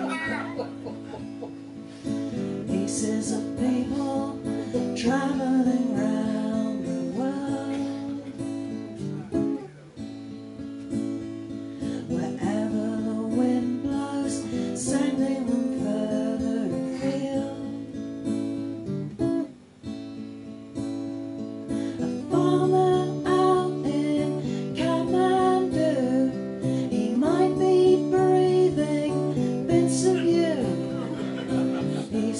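Acoustic guitar strummed in a live solo folk song, with a woman singing over it.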